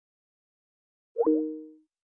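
About a second in, a short electronic sound effect: a quick upward pitch glide that settles into two steady tones, fading out within about half a second.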